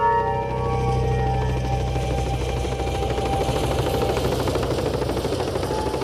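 Helicopter rotor chopping rapidly and steadily over a low engine hum, with synthesizer music tones fading out in the first couple of seconds.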